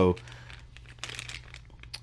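Clear plastic parts bag crinkling faintly and irregularly as it is handled in the fingers.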